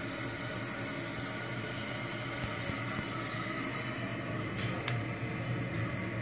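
Toilet tank refilling through a newly installed float-cup fill valve: water rushing and hissing steadily into the tank.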